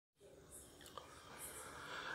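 Near silence: faint recording hiss with one small click about a second in.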